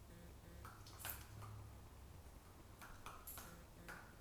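Near silence in a quiet room, broken by a few faint clicks and taps from a Shetland sheepdog moving about on a hardwood floor, the clearest about a second in and a few more near the end.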